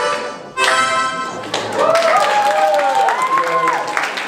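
Harmonica playing sustained chords that stop about one and a half seconds in, followed by applause with voices calling out.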